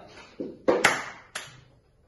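Bare hands striking and clapping in a slow rhythm beside a wooden table: a soft knock, then three sharp slaps within about a second.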